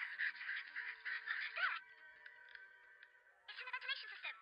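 Soundtrack of an animated episode playing back, heard as dense music and effects. It thins out a little under two seconds in, and new wavering pitched sounds come in near the end.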